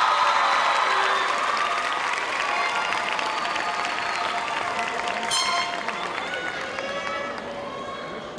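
Audience applauding, mixed with cheering and voices, fading slowly. A louder cheer comes about five seconds in.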